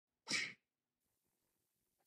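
A single brief, breathy burst of a person's breath or voice, about a quarter second in, lasting about a third of a second.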